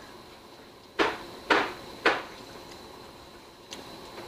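A woman eating a steamed artichoke leaf, making appreciative 'mm' sounds. There are three short bursts of mouth and breath noise about half a second apart, starting about a second in.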